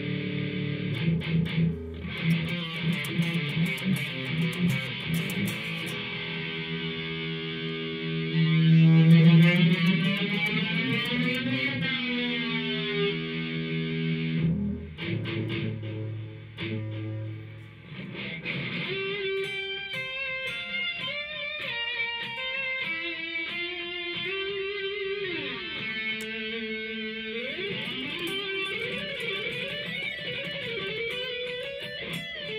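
Electric guitar (ESP LTD EC-1000) played through a NUX PG-2 portable multi-effects unit while its knobs are turned. Distorted chords pulse in volume at first, then take on a sweeping modulation effect. The second half is cleaner single notes with slides.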